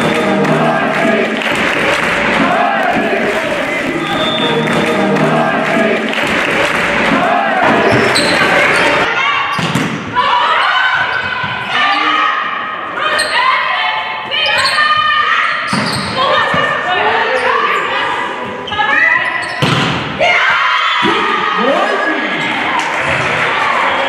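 Music for the first several seconds. Then the live sound of a women's volleyball rally in a sports hall, with several sharp ball hits and players' voices calling out over the hall's background noise.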